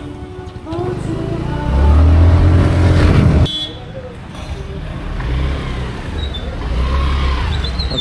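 Engine and heavy wind rumble from a moving vehicle, the engine pitch rising, cut off abruptly about three and a half seconds in; then street traffic, with a car driving past and a scooter moving off.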